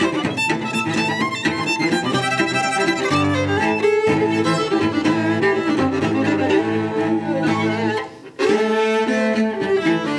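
Live fiddle tune: a fiddle carries the melody over bowed cello and low string accompaniment. The music drops out for an instant about eight seconds in, then carries on.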